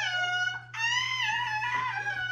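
A high-pitched voice squealing in long drawn-out notes: one held note that breaks off just over half a second in, then a second, slightly rising one that runs on.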